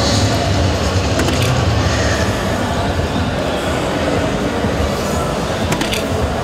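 Steady, loud din of a large hall full of people and electronic dart machines, with a couple of sharp clicks near the end.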